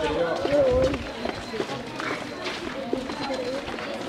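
Indistinct chatter of a walking group of children and adults, with the shuffle of many footsteps on paving.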